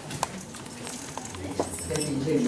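A few irregular light clicks and taps over a low room murmur, with no one speaking.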